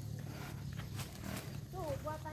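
A faint person's voice with a short falling call near the end, over a steady low hum, with a few soft knocks or steps in the middle.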